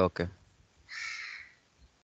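A single short, harsh bird call about a second in, lasting under a second.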